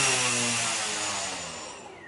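Brushless outrunner motor and propeller on the rear arm of a tricopter spinning down: a pitched hum that holds briefly, then falls in pitch and fades away over about two seconds. The prop is still out of balance, and the small weight just added has not done much to its vibration.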